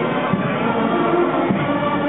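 A group of men's voices singing together as a chorus, with steady held notes.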